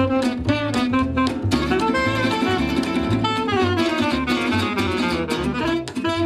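Jazz quartet playing live: a tenor saxophone melody over two acoustic guitars and an upright bass, with a steady bass pulse underneath.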